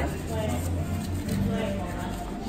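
Indistinct speech in the background over a low, steady hum.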